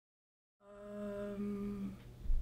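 A girl humming one steady, level 'mmm' for about a second and a half. It begins after dead silence just over half a second in: a thinking hum before an answer.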